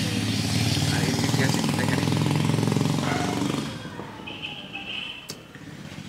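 A motor vehicle's engine running loudly, which fades away a little past halfway through, followed by a brief high steady tone.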